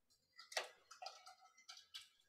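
Faint computer-keyboard typing: a string of soft, irregular keystroke clicks.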